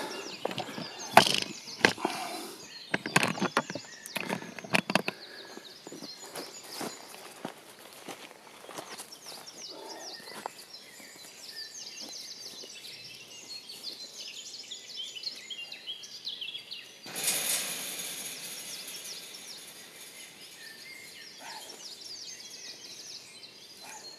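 Forest ambience with small birds chirping and singing throughout. In the first five seconds there is a cluster of sharp knocks and handling noise as the camera is set down, and about 17 seconds in there is a two-second burst of rushing noise.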